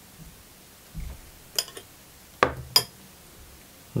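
A few light clinks of a metal fork against a glass bowl, the two sharpest about two and a half seconds in, with a soft thump about a second in.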